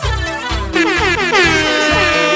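Electronic dance remix with a steady kick-drum beat. About a second in, a loud horn-like tone with several overtones slides down in pitch and then holds steady.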